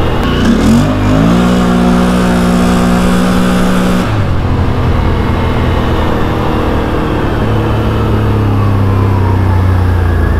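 Can-Am Outlander 650 XMR V-twin engine running with its belt-driven CVT, fitted with a Dalton DBO 650 spring and flyweight kit in the stock primary clutch. The engine revs up about a second in and holds high until about four seconds in, then drops to a lower drone with a slowly falling whine.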